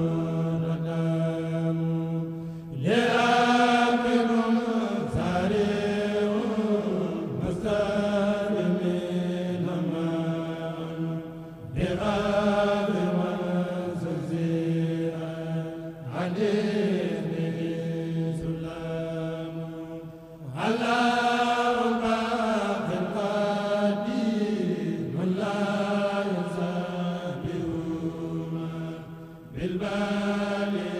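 A kurel, a group of Mouride men's voices, chanting an Arabic khassida together without instruments. The chant comes in long, drawn-out melodic phrases of about nine seconds each, with a short break between phrases.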